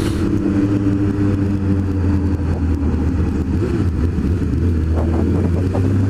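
Honda CB600F Hornet's inline four-cylinder engine running at a steady low engine speed, heard from the rider's seat while cruising slowly.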